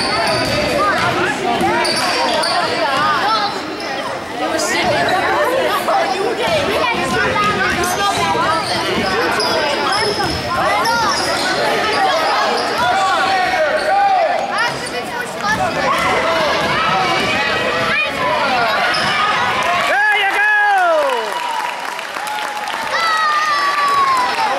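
A basketball being dribbled on a hardwood gym floor, with repeated bounces, under steady chatter and shouts from players and spectators in a large, echoing gym. About twenty seconds in, one long shout falls in pitch.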